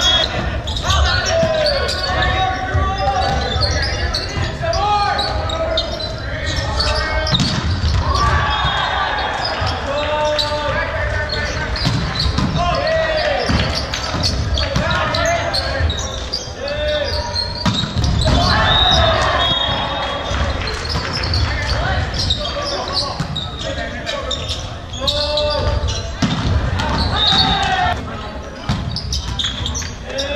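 Indoor volleyball game in a large, echoing gym: players and spectators shouting short calls, with the thud of the ball being struck and landing on the hardwood floor.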